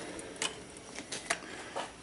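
Quiet room tone with a few light clicks, about three spread across two seconds.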